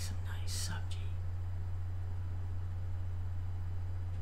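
A woman says one short word, "some?", near the start, over a steady low hum.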